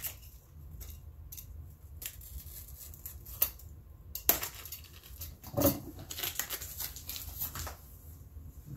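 Bubble wrap and packing tape rustling and crinkling as they are cut with a box cutter and peeled away, with scattered sharp clicks and crackles.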